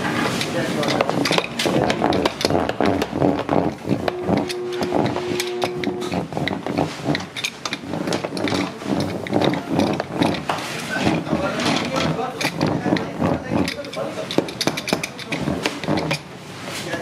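Indistinct talking with frequent short knocks and clatter throughout, and a brief steady tone lasting about two seconds, about four seconds in.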